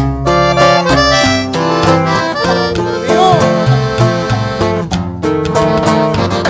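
Live norteño-banda music, instrumental with no singing. An accordion carries the melody over a tuba bass line and strummed guitar.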